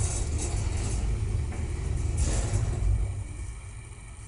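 Electric passenger lift (1 m/s, 400 kg) riding in its shaft, heard from inside the cabin as a steady low rumble. It grows quieter in the last second, as the car slows.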